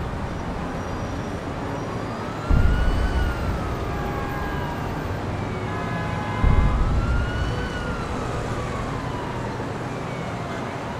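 A siren wailing, its pitch slowly rising and falling twice, over a heavy low rumble that surges about every four seconds.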